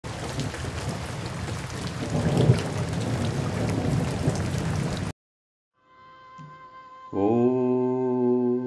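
Steady rain with rumbling thunder, loudest about two and a half seconds in, cuts off suddenly about five seconds in. After a moment of silence, faint held tones come in, and about seven seconds in a strong, steady musical drone begins.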